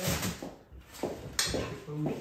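People talking at a dinner table, with a single sharp knock about one and a half seconds in.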